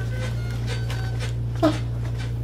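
Manual chest compressions on a CPR training manikin, a soft rhythmic noise at about two strokes a second, over a steady low hum. A short falling squeak comes about one and a half seconds in.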